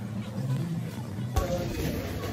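Indistinct voices with faint music behind them; the sound changes abruptly about one and a half seconds in.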